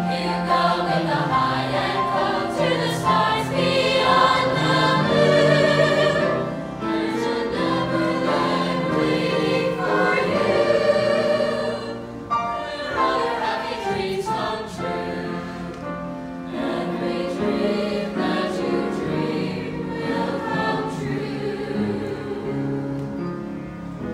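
Mixed-voice high-school choir singing a Disney song medley, accompanied by piano, with long held chords; the singing grows softer in the second half.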